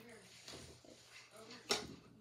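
A single sharp click about three-quarters of the way through, against quiet handling sounds and faint murmured voice.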